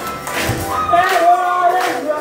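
Karaoke singing: a man's voice through a PA over a backing track with sharp percussion hits, holding one note through the second half.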